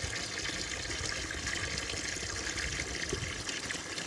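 Water running steadily into a plastic cattle stock tank from its fill line and float valve, the tank refilling after being knocked over and drained.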